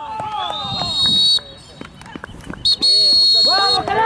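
Referee's whistle blown in two long, steady, high-pitched blasts about a second and a half apart, the first sliding up in pitch as it starts, signalling a goal. Players' short shouts come between and around the blasts.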